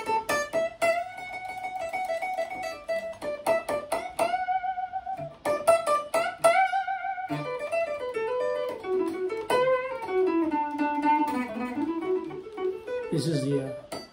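A frame-body silent guitar playing a single-note lead over the D major / B minor pentatonic scale: quick picked runs, then a few long notes held with a wavering vibrato.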